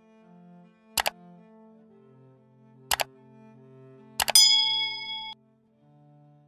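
Soft background music under a like-and-subscribe animation sound effect: three sharp double clicks about two seconds apart, the last followed by a bright bell-like ding that rings for about a second.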